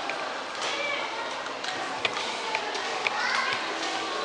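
Background hubbub of people's voices in a shopping mall atrium, children's voices among them, with a few sharp clicks in the second half.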